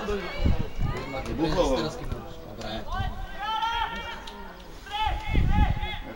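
Distant shouts of players calling out across a football pitch: a few short, pitched calls, the clearest in the second half.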